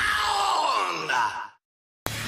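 A drawn-out voice with a bending pitch over commercial music, cut off abruptly about one and a half seconds in, then silence.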